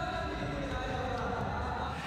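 Ice hockey arena background during a stoppage in play: a steady low hum with sustained music-like tones held throughout, at moderate level.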